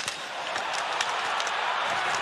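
Steady crowd noise in an ice hockey arena, an even hubbub of many voices.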